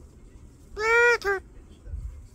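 Male eclectus parrot giving one loud two-part call: a long, slightly arching note of about half a second, then a short second note right after it.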